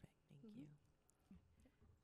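Near silence in a meeting room, with a faint off-microphone voice murmuring briefly near the start and again past the middle.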